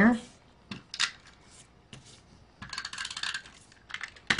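An adhesive tape runner run across a small paper die-cut to lay glue on it: a couple of light clicks, then a short rasping run of clicks about three seconds in.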